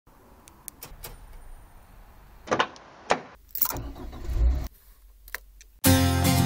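Faint clicks from a car key remote being handled, then a few sharp clunks and a stretch of low rumble about two and a half to four and a half seconds in, the sounds of a car being unlocked and entered. Music starts abruptly just before the end.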